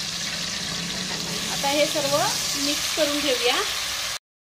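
Chopped onion and ginger-garlic-chilli paste sizzling steadily in hot oil and butter in an aluminium pot. From about halfway in, a spatula stirs them, scraping the pot in a few short, sliding, pitched strokes.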